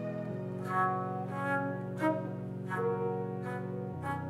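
Slow instrumental music played on a synth keyboard: a held low chord that changes about a third of a second in and again at the end, under a melody of separate higher notes.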